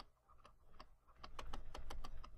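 Pen stylus clicking and tapping on a tablet surface while a word is handwritten: a quick, irregular run of quiet clicks that starts a little under a second in and grows denser toward the end.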